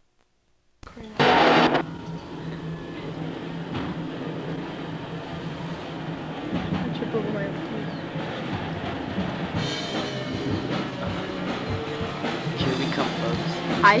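A teenage thrash metal band of two electric guitars and a drum kit playing an original song inside a garage, heard from outside. The song is muffled and steady. About a second in, a loud half-second burst of noise comes as the recording starts.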